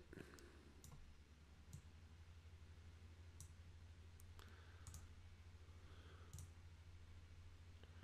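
Near silence: a low steady hum with about half a dozen faint, scattered computer mouse clicks.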